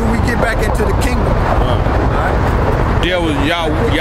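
Men talking, clearly about three seconds in, over a steady low rumble of street background noise.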